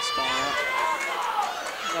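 Voices calling out over the murmur of a crowd in a hall during an MMA bout, one voice gliding downward in pitch about a second in.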